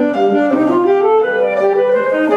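Saxophone playing a flowing melody, its notes changing several times a second, over piano accompaniment.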